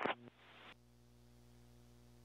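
Near silence with a faint steady hum, after the last fraction of a second of a played-back air traffic control radio message.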